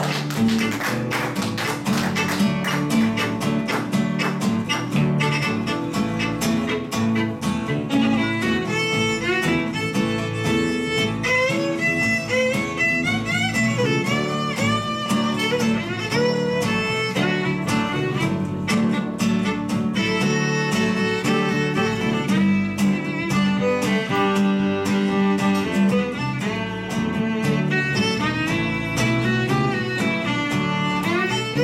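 Instrumental break played live on fiddle, acoustic guitar and acoustic bass guitar: the fiddle plays a lead melody over steady guitar strumming and a bass line, the fiddle line standing out more from about eight seconds in.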